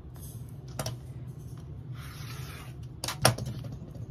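Rotary cutter and acrylic ruler at work on a quilting cutting mat. There is a short rasping cut through fabric about two seconds in, then a few sharp plastic clicks a second later as the tools are handled, over a low steady hum.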